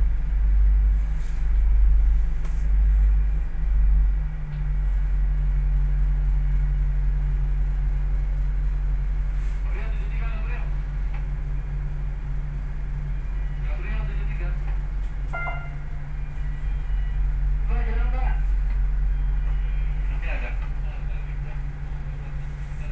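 Tugboat engine running with a steady low drone, uneven for the first few seconds and then even. Voices call out briefly a few times over it.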